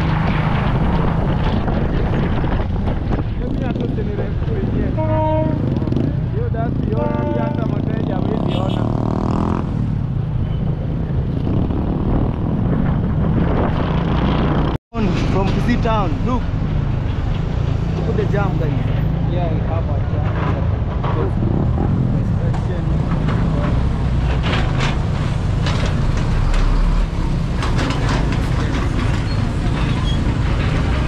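Motorcycle engine running steadily as it rides through slow town traffic, with other vehicles and voices around it. The sound cuts out completely for a split second about halfway through.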